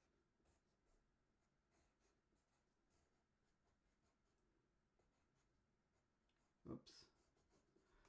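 Very faint scratching of a pencil on paper as letters are written, in short strokes. About seven seconds in, a brief low voice sound.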